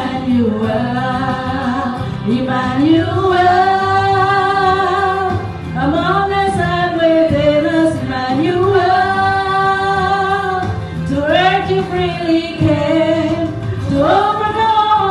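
Two women singing a slow Christmas worship song in long held phrases, with keyboard accompaniment.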